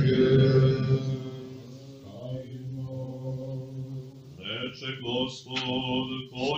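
Orthodox liturgical chant in male voice: long held notes that fade away over the first two seconds. About four and a half seconds in, a voice begins intoning text on a chant tone, the start of the chanted Gospel reading.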